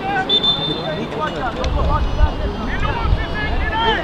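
Footballers' shouted calls carrying across an open grass pitch, several short voices one after another, with wind rumbling on the microphone from about a second and a half in.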